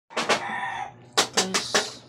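Chicken calls in two bouts: one drawn-out call, then about a second in, a quick run of four short, loud calls.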